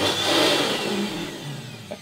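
Handheld plug-in electric duster running at full blast: a loud rush of air with a motor whine that slowly falls in pitch.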